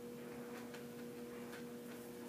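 Quiet room with a steady low hum and a few faint, soft ticks, as from a hand handling a large paper poster.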